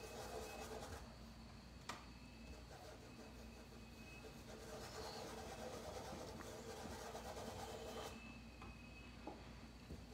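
Faint rubbing of a paintbrush working paint into fabric, in short strokes, with a couple of soft clicks.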